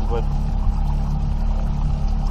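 Boat outboard motor running at a steady speed with a continuous low drone while the boat is under way.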